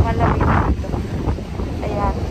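Strong wind buffeting the microphone, a dense low rumble throughout, with a short burst of voice in the first half-second.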